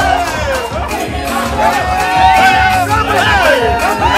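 Dance music with a steady beat under a crowd shouting and cheering, with many overlapping whoops and yells.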